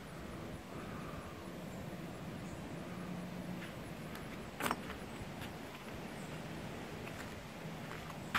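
Quiet, steady outdoor background noise, with a single short click a little past halfway through.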